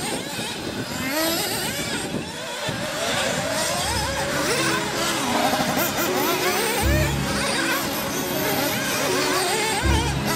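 Several nitro RC buggy engines revving up and down in a high pitch as the buggies race. From about four seconds in, music with a steady bass line plays along with them.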